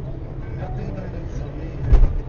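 Road noise from inside a moving car, with indistinct voices and a loud thump just before the end.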